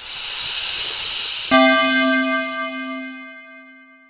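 Channel logo sound effect: a hissing whoosh for about a second and a half, then a sudden struck hit that leaves a ringing, bell-like tone slowly fading away.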